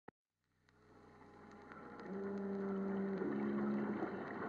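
Opening sound effects from an old vinyl record: a rushing-water background fading in under surface crackle, then a low, steady horn-like tone from about two seconds in that shifts pitch about a second later.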